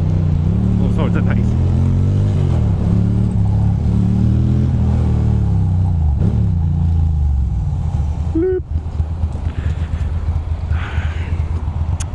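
Ducati Monster 620's air-cooled L-twin engine pulling through the gears, its pitch rising and falling with each shift, then dropping to idle as the bike slows to a stop about eight seconds in.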